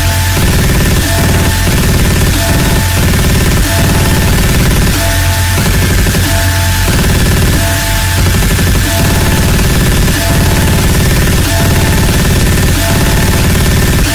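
Deathstep electronic music sped up nightcore-style, instrumental with no vocals. A heavy steady bass runs under dense, noisy synth layers, and a short two-note figure higher up repeats throughout.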